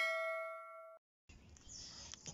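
A notification-bell ding sound effect from a subscribe-button animation: one bright chime that rings and fades, then is cut off abruptly about a second in. After that there is faint background noise.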